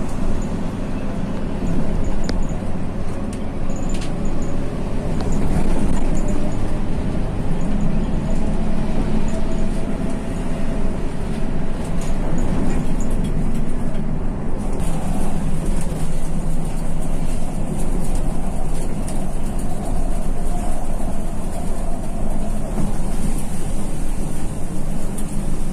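Bus engine running steadily with road noise, heard from inside the driver's cab while driving; a steady hiss joins about halfway through.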